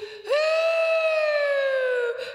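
A woman's voice singing one long wordless note, rich in overtones, that begins about a quarter second in and slides slowly down in pitch, breaking off near the end.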